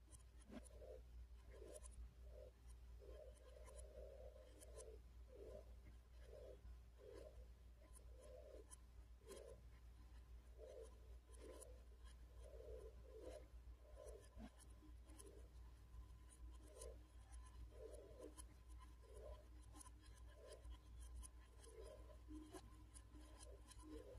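Faint sound of a small red electric fan running: a low, steady hum and a thin steady tone, with a soft rubbing or scraping that repeats unevenly, about once or twice a second.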